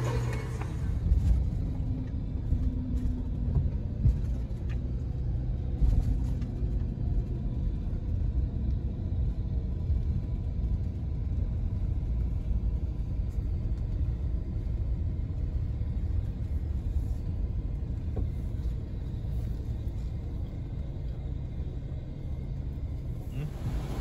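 Low, steady motor-vehicle rumble, with a few brief knocks in the first six seconds.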